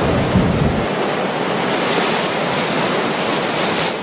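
Ocean-surf sound effect: a steady rush of waves with no music or voice over it, beginning to fade right at the end.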